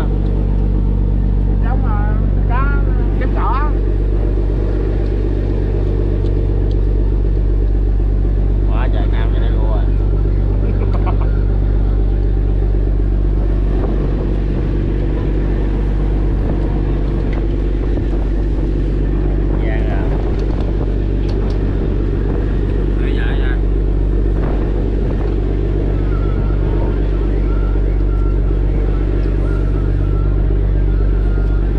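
Fishing trawler's engine running at a steady, even drone throughout, with a few brief voices over it.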